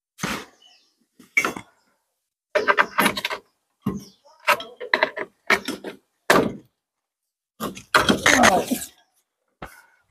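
A string of short knocks, clunks and rustles from tools and gear being handled while an angle grinder is set up for cutting out mortar. The grinder does not run.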